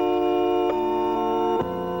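Organ music: sustained chords held steady, changing twice, about two-thirds of a second and a second and a half in.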